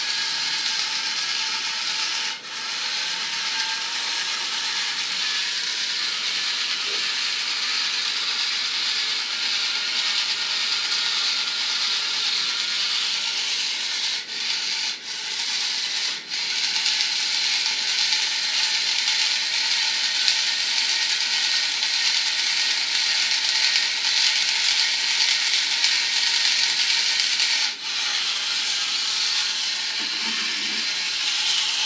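Small electric can opener running continuously, its motor and gears whining and grinding steadily as it works around a can, with a few brief dips in the sound.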